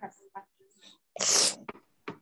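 A person sneezing: one short, hissy burst a little past a second in, followed by a few faint clicks.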